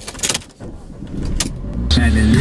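Sharp clicks from the key and dashboard controls of a Mercedes-Benz car, then its engine starting, with a low rumble building through the second half.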